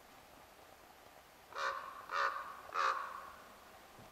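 A corvid calling three harsh caws in quick succession, each about a third of a second long and spaced roughly half a second apart.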